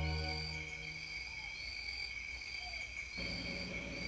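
Soft new-age music fades out in the first second, leaving insects chirping outdoors, about one chirp a second over a steady high drone.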